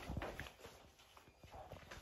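A few faint, short taps and clicks over quiet room tone, mostly in the first half second and again near the end.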